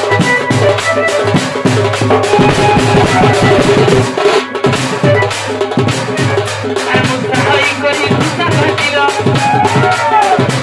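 Large painted dhol barrel drum beaten with a stick in a fast, steady rhythm of repeated strokes. A held, bending melody line runs over it and grows stronger near the end.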